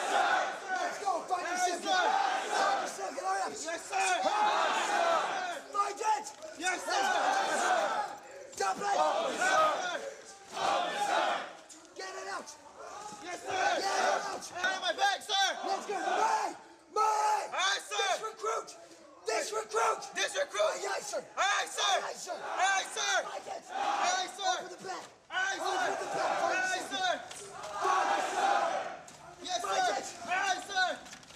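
Many men shouting at once, recruits yelling their responses in unison with drill instructors barking over them, so loud and overlapping that no words come through. The shouting comes in repeated loud bursts with short breaks.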